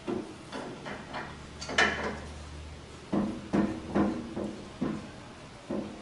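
Irregular metal clanks and knocks as a vintage Delta Unisaw's motor is being unbolted by hand inside its cast-iron cabinet. There are about ten short knocks, some ringing briefly, the sharpest a little under two seconds in.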